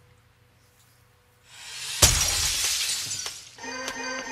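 A rising whoosh swells about one and a half seconds in, then a sharp crash of shattering glass that trails off over about a second and a half. Music with steady held tones begins near the end.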